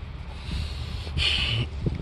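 Low rumble of wind on the microphone, with a short breathy exhale a little over a second in.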